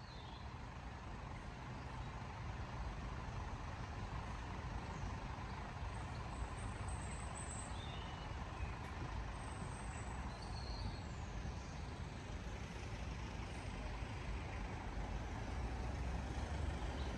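Alexander Dennis Enviro400 double-decker bus idling at the stand, heard from outside as a steady low rumble that swells over the first two seconds, with a few faint bird chirps.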